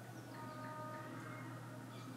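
Faint music: a few notes held together for about a second, over a steady low hum, with a few short high chirps.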